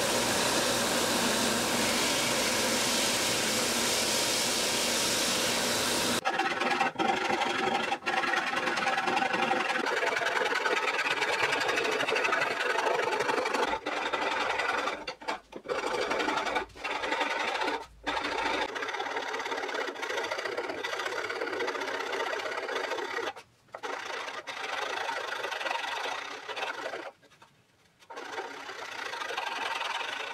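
Bench belt sander running with a wood neck blank pressed against the belt, removing stock from its underside; it cuts off abruptly about six seconds in. After that come uneven scraping and rasping sounds of hand tools shaping the maple neck, broken by several short pauses.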